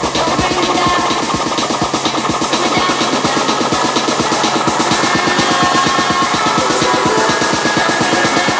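Tech house DJ mix playing: a fast, driving electronic beat with dense percussion. The deepest bass thins out partway through.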